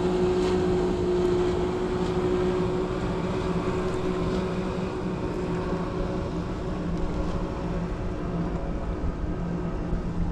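Small motorboat's outboard engine running steadily as it crosses the water, a droning hum that slowly fades as the boat moves away.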